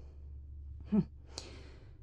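A woman's short hesitant voiced sound about a second in, then an audible sigh: a breathy exhale lasting about half a second.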